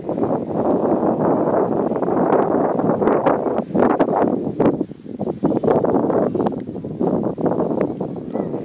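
Wind buffeting the microphone: a loud rushing noise that rises and falls in gusts, with sharp pops.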